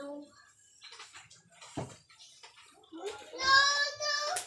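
A young girl's wordless vocal sound, held on one steady high pitch for about a second near the end, after scattered rustling and a soft knock.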